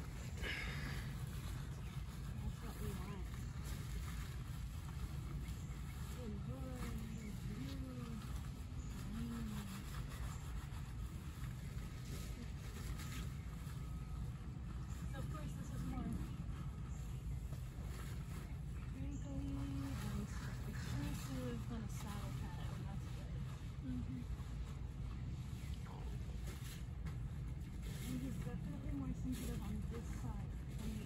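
A steady low rumble throughout, with a faint, soft voice murmuring now and then.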